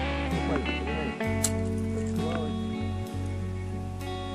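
Background music with held notes and a steady bass.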